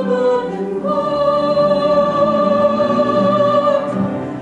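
Mixed ensemble of singers singing in chorus, moving through a few notes and then holding one long chord from about a second in until near the end.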